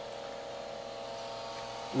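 Steady machine hum from a running Palomar 300A tube amplifier, most likely its cooling fan: an even whir with a few faint steady tones over it, unchanging throughout.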